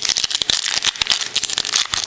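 Basketball trading cards being flipped through by hand: a quick, dense run of card edges clicking and flicking against each other.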